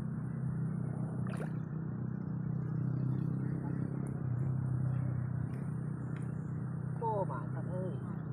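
A motor running with a steady low hum, its pitch unchanging. A short bit of voice is heard near the end.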